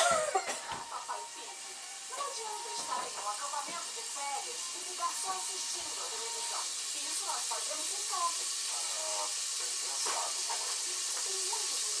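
Cooking oil heating in a pressure-cooker pot on a gas stove, a faint steady hiss and sizzle that grows slowly louder as the oil gets hot enough to sear meat.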